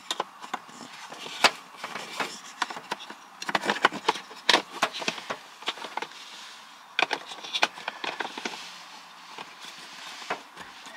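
Hands working a heater blower resistor pack and its cable into the dashboard housing: scattered sharp clicks, taps and rustles, busiest about three and a half to five seconds in and again around seven seconds.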